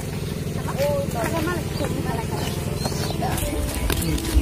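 People talking, with a steady low hum underneath.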